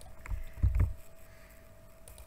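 A few dull thumps from keystrokes on a computer keyboard: a short one about a quarter second in, then a louder cluster a little after half a second, over a faint steady hum.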